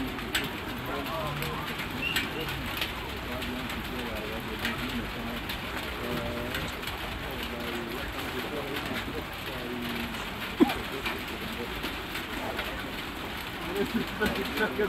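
Outdoor football-pitch ambience with distant voices and several short, low held cooing tones. One sharp ball kick stands out a little after halfway.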